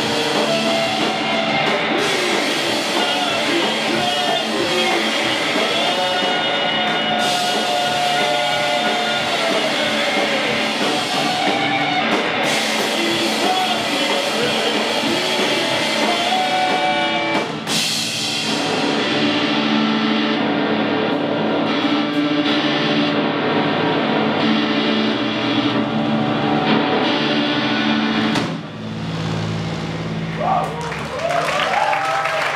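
Live rock band with electric guitar, bass guitar and drum kit playing loudly. About two-thirds of the way through, the cymbals and drums drop away and sustained guitar and bass notes ring on, with the top end fading, as the song closes.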